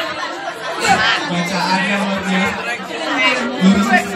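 A crowd of schoolchildren chattering and calling out all at once, many voices overlapping.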